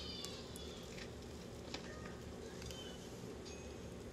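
Faint chewing of a bite of a chicken slider sandwich over quiet room tone, with a few soft clicks.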